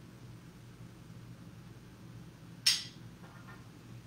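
A utensil clinks once against a pan or dish while the braised cabbage is served up, over a steady low hum.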